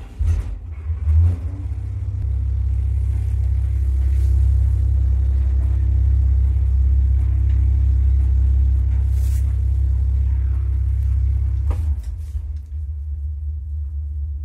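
A 1989 KMZ passenger elevator car travelling in its shaft with the doors shut: a loud, steady low rumble. A couple of knocks come in the first second as it sets off, and the rumble drops around two seconds before the end as the car slows.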